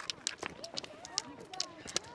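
Footsteps of several people running uphill on a dirt track with ski poles, a quick irregular patter of steps and pole taps during a sprint.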